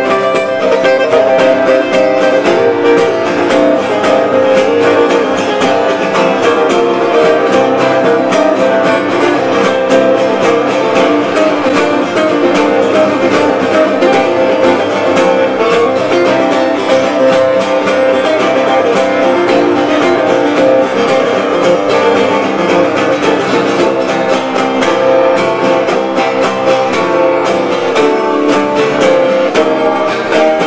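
Two acoustic guitars played live, steadily strummed and picked together in an instrumental passage.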